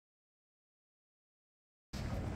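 Dead silence, with no sound at all, until a steady background noise cuts in abruptly at the very end.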